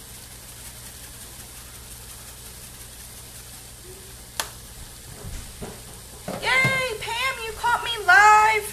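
Cauliflower rice frying in a skillet, a steady low sizzle, with a single sharp click about halfway through. A woman's voice comes in near the end.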